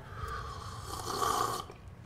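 A man slurping a drink from a cup: one long, noisy sip lasting about a second and a half that swells a little before stopping.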